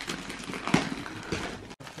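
Wrapping paper being torn and crinkled by hand in quick, irregular rustles, with a momentary break near the end.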